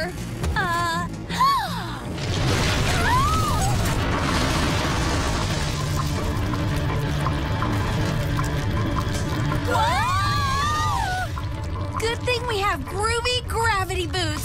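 Cartoon soundtrack: music under a steady rushing noise, with characters' voices crying out in long rising-and-falling exclamations near the start and again about two-thirds of the way through.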